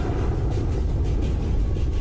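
Deep, steady rumble: a dramatic sound effect for an animated collision between two planets.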